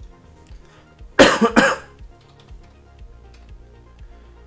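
A person coughs twice in quick succession, loud, about a second in, over quiet background music with a steady beat of about two thumps a second.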